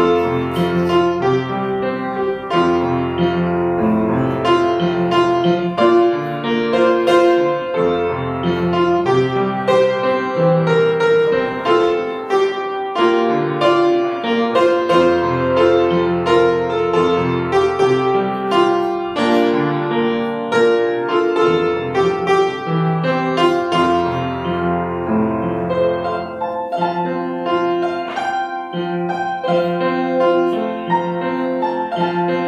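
A church keyboard playing a slow piece in chords, each chord held about a second over long, low bass notes.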